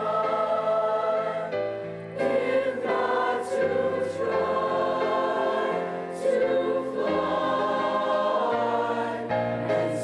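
A mixed-voice high school choir singing, holding chords that change every second or so, with crisp 's' consonants cutting through.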